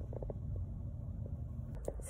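Low, steady rumble of a car cabin, with a few faint clicks.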